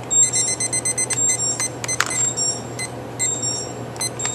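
Digital kitchen timer beeping: a rapid run of high beeps for about the first second and a half, then single short beeps, each with a button click, as it is set to 20 minutes.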